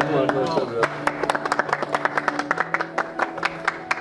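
Hand clapping, a quick run of sharp claps, over steady background music.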